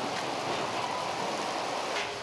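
Steady rushing hiss of a fire hose's water stream spraying onto a burning structure.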